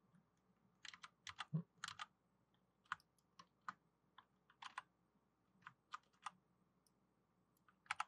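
Faint clicks of a computer keyboard and mouse, scattered taps in small irregular clusters with short gaps between them.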